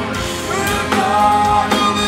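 Live rock band playing: electric guitars, bass guitar and a drum kit.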